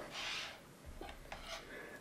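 Faint handling sounds, a few light clicks and rubs, as a ruler and a plastic golf disc are picked up from a table.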